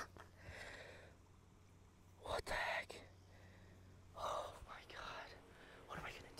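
A few faint breaths and muttered, half-whispered sounds from a dismayed young man, with quiet gaps between them: once just after the start, a short sound about two and a half seconds in, and a longer muttering around four to five seconds in.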